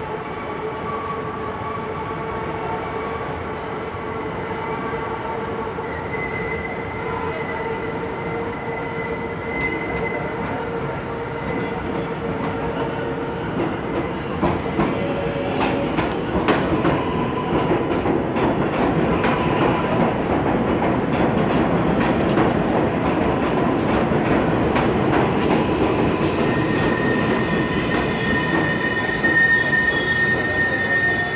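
New York City subway 7 train pulling into the station. A steady electric motor whine grows louder from about halfway through. A rapid run of wheel clicks over the rail joints follows, and a high steady wheel squeal comes in near the end.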